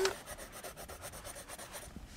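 Quiet rustling and rubbing of paper as the pages of a paperback workbook are leafed through, a run of faint scratchy strokes.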